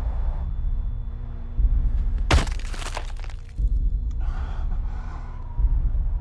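A sharp crack with a short ringing tail about two and a half seconds in, the sound of the snow crust at a cliff edge cracking, over low pulsing film music; a softer hiss follows near the end.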